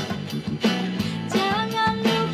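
A band playing a song: a woman singing over acoustic guitar strumming, electric bass and a steady beat struck on an electronic drum pad.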